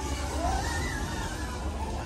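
Steady low rumble of a moving dark-ride vehicle, with a faint pitched sound gliding up and down about half a second in.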